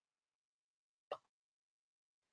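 Near silence, broken once by a single short pop about a second in.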